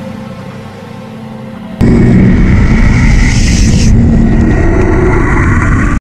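A low hum, then about two seconds in a sudden, very loud blast that carries on as a dense, distorted rumble.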